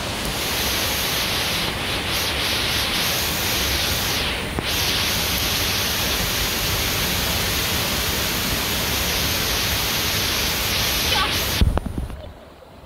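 Steady hissing rush of falling rain mixed with the far-off rush of Diyaluma Falls, which breaks off abruptly near the end.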